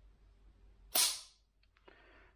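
Howa HACT two-stage trigger breaking in a dry fire: one sharp metallic snap about a second in as the sear releases, then a faint click shortly after.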